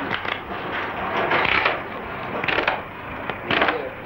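Playing cards and hands knocking and sliding on a plastic-covered table: a rustling clatter with a few sharp taps near the start and late on.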